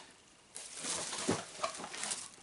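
Bubble wrap and a small cardboard box rustling and crinkling as they are handled. The sound starts about half a second in, with small irregular clicks and taps.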